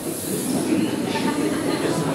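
Crowd noise in a hall: a dense, steady wash of sound with indistinct voices mixed in, a little louder from about half a second in.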